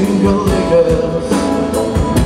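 Live blues band playing: electric guitar and keyboard over a drum kit keeping a steady beat of about two hits a second.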